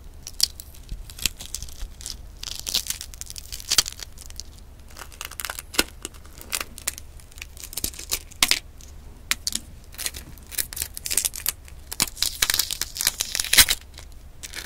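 Fingertips peeling the shell off a brown boiled egg: a dense run of irregular small crackles and snaps as the shell breaks away, with the papery tearing of the shell membrane. The crackling is busiest toward the end.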